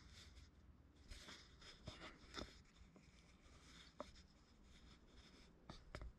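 Faint, soft scratching of a paintbrush working paint onto small sculpted clay feathers, with a few light taps.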